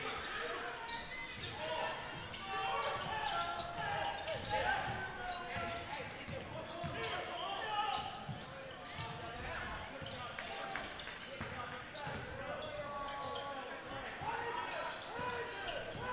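Basketball game sound in a gymnasium: a basketball bouncing on the hardwood floor again and again, under the steady chatter of the crowd in the stands.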